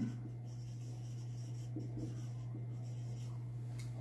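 Marker pen scratching faintly on a whiteboard as words are written, over a steady low hum.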